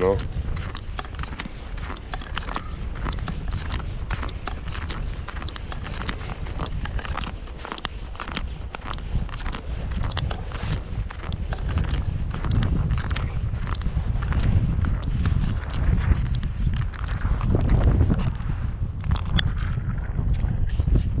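Footsteps on lake ice, a steady run of clicks and scuffs as someone walks across the ice, with wind rumbling on the microphone.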